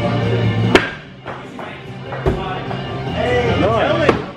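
A thrown axe hitting a wooden target board: one sharp, loud impact about a second in, with another impact a little past halfway through, over background music.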